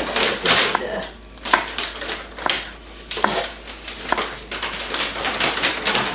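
Chef's knife chopping an onion on a wooden cutting board: a run of sharp knocks of the blade on the board, several a second, with short pauses between runs.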